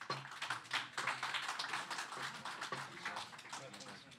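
A roomful of people clapping, with voices mixed in. It starts suddenly and dies away near the end.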